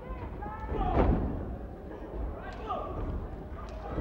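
Crowd noise in a large hall with scattered shouts, and a heavy thud from the wrestling ring about a second in.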